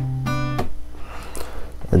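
Acoustic guitar notes fingerpicked together and ringing, with a fresh pluck about a quarter second in; the notes stop short just after half a second, closing a demonstration of the plucking pattern.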